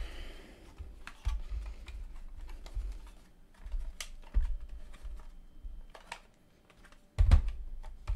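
Plastic case of a 1970s RGD Rover portable transistor radio being handled and turned over by hand on a silicone mat: scattered light clicks and low knocks, with a louder knock near the end.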